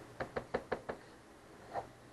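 Computer keyboard keystrokes: a quick run of five key clicks in the first second, then a single softer one near the end.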